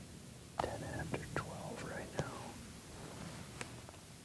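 A person whispering for about two seconds, with a few sharp clicks mixed in.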